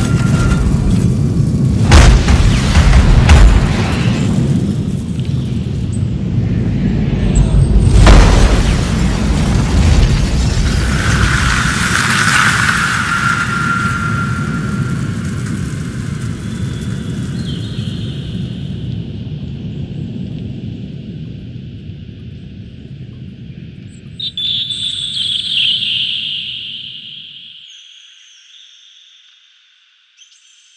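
Heavy booming rumble with music, struck by loud crash-like hits about two, three and eight seconds in. It dies away slowly, with a few held tones in the later part, and fades out to near silence shortly before the end.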